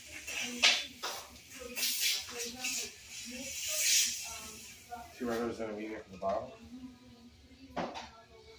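Quiet, indistinct talking, with a hiss that swells and fades about four seconds in and a few sharp clicks.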